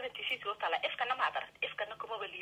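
Rapid speech with a thin, narrow sound, as heard over a telephone line.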